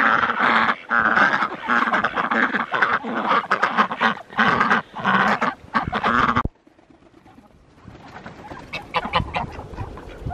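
A flock of domestic ducks quacking loudly in a dense, continuous chorus that cuts off abruptly about six and a half seconds in. Fainter, scattered calls follow near the end.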